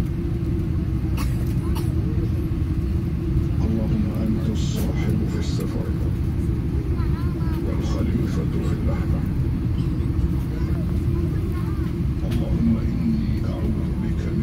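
Steady low rumble of an airliner moving on the ground, heard from inside the passenger cabin: engine noise and wheel rumble at an even level.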